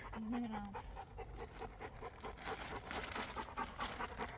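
Cane Corso panting close by: quick, even breaths, several a second. A voice is heard faintly for a moment near the start.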